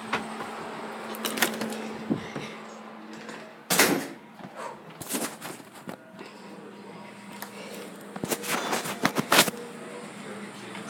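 A door being opened and shut, with scattered knocks and clicks from handling, the loudest about four seconds in and a quick cluster near the end, over a steady low hum.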